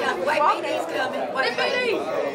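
Several people talking over one another in a large room.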